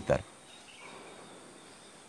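A man's speech breaks off just after the start, then a pause of faint, steady outdoor background noise with a thin, high, steady tone running under it.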